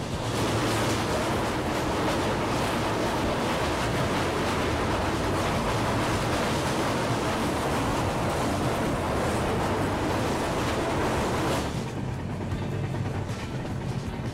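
Train wheels running over a steel girder bridge, a loud, even rush of noise heard through an open coach door, which drops off sharply about twelve seconds in as the train comes off the bridge. Background music runs underneath.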